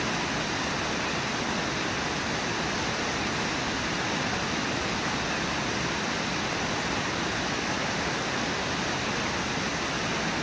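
Brooks River whitewater rushing over and below Brooks Falls: a steady, unbroken rush of falling water.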